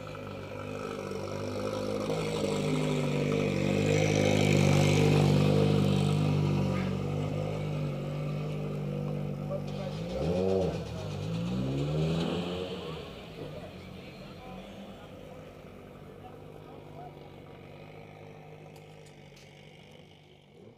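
A car engine running at a steady low note that grows louder over the first few seconds, then revved sharply down and up a couple of times about ten to twelve seconds in, before fading away.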